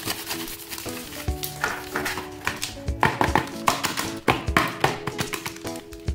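Background music with steady held notes, over the irregular crinkling and tapping of plastic chocolate-bar wrappers being handled, busiest in the second half.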